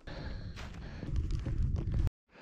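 A hiker's footsteps brushing through low heath, with wind rushing on the microphone. It grows louder and cuts off abruptly at the end.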